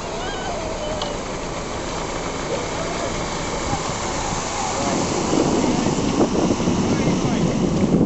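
Steady rushing noise of water and wind around a moving boat on a river, with faint distant voices; it grows louder about five seconds in.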